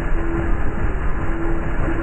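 Live-coded electronic music built from chopped, looped samples: a dense, rumbling noise texture, dull in the highs. A mid-pitched held tone comes and goes about once a second.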